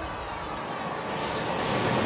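A hissing rush of noise, a sound-design swell under the commercial's soundtrack, growing steadily louder.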